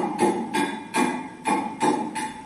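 Hand hammering in a steady rhythm, about three blows a second, each strike ringing briefly with a metallic tone.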